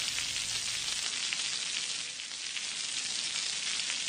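Oil sizzling steadily on a hot stone slab under a brick-shaped block of food being grilled, with faint small crackles.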